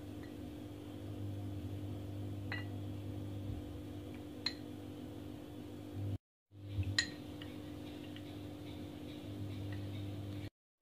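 A steel spoon stirring custard powder and water in a small glass bowl, clinking lightly against the glass a few times, over a steady low hum.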